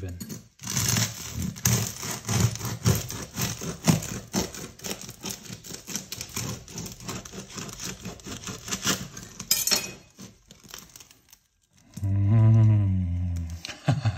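A bread knife sawing through the crisp crust of a freshly baked sourdough loaf: a dense run of crackling, scraping cuts that stops about ten seconds in. The loaf was baked the same day, so its crust is extra crispy.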